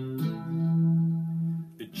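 Electric guitar sounding a single low note: a C for an instant, then moving up to an E that rings for about a second and a half.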